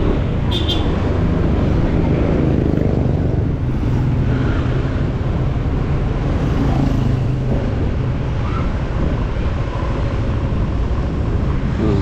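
Motorcycle engine running steadily while under way, with road and traffic noise around it. A short high-pitched chirp sounds about half a second in.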